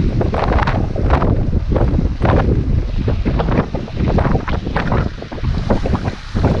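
Heavy wind buffeting the microphone in uneven gusts, over the rush of water pouring down a rock slab into a pool.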